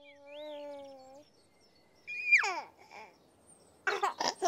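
A baby's voice: a held coo, then a loud squeal that slides down in pitch about two seconds in, and short bursts of giggling near the end.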